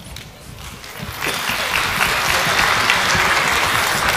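Audience applause: after a brief lull it builds about a second in and holds steady.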